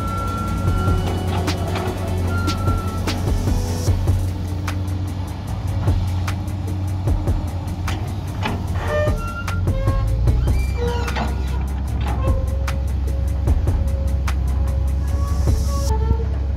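Komatsu PC200 hydraulic excavator's diesel engine running steadily while it digs, its low drone shifting lower about ten seconds in, with background music laid over it.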